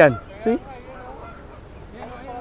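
Flock of Canada geese honking: one short, loud honk about half a second in, then many softer overlapping calls.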